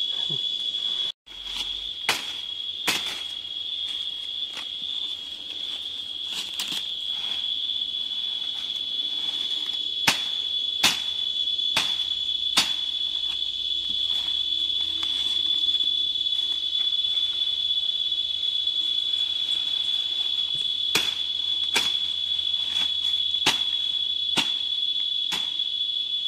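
A machete chopping through leafy plant stems for chop-and-drop mulch, about a dozen sharp strikes at irregular intervals, the loudest about ten and eleven seconds in. A steady high-pitched drone of insects runs underneath throughout.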